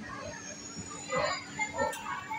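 Pune Metro train carriage running: a steady hum with a faint high whine, with voices briefly in the second half and a sharp click near the end.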